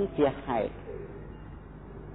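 A man speaking Khmer for about half a second, then a pause in which a faint, low cooing bird call sounds in the background about a second in.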